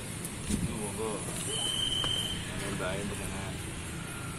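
Steady traffic noise from a busy road, with faint voices talking in the background. A single high steady tone sounds for about a second, starting about one and a half seconds in.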